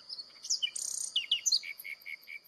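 Small birds chirping: quick, varied high tweets, then a quick series of short repeated notes near the end, over a thin steady high tone.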